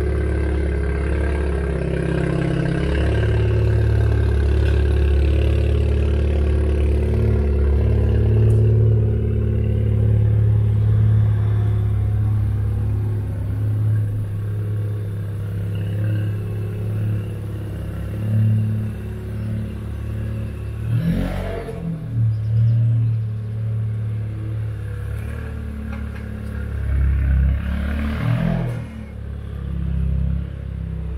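Ford Fiesta ST engine running with a steady low exhaust note through a sports cat exhaust; the note shifts briefly twice in the second half.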